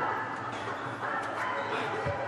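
Women volleyball players' high-pitched shouts and cheers in a large sports hall, celebrating a point just won.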